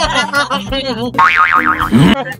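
Background music under voices, then a loud, fast-wobbling cartoon 'boing' sound effect for the last second.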